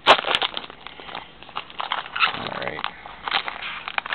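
Plastic and foil wrapping of a Bowman trading-card pack crinkling and tearing as it is pried open by hand, starting with a sharp rip and going on as an irregular crackle.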